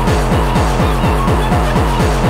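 Speedcore track: a distorted kick drum hammering several times a second, each hit sliding down in pitch, with short synth tones above it.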